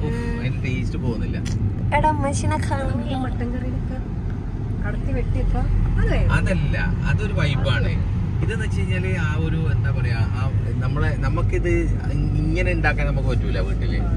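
People talking inside a moving Volkswagen car, over a steady low rumble of engine and road noise from the cabin.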